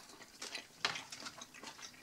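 A few light clicks and taps as a clear plastic salad tub and a plastic fork are set down on a wooden table, the sharpest a little under a second in.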